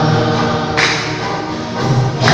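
Many voices singing a Telugu Christian worship song together over instrumental accompaniment, continuous and full.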